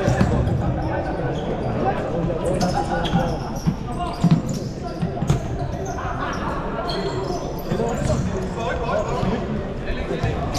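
A futsal ball being kicked and bouncing on a sports-hall floor: scattered thuds that echo through the large hall over steady chatter from players and spectators.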